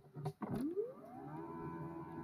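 A few clicks, then a pitched electronic tone that sweeps up in pitch and levels off into a steady held note.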